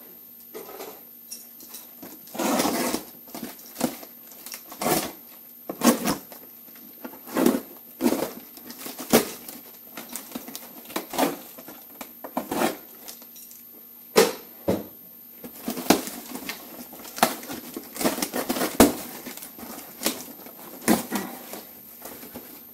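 A cardboard parcel being opened by hand: packing tape is pulled and torn off the box and the cardboard is handled. The sounds come in irregular rustling, scraping and tearing bursts, some lasting about a second.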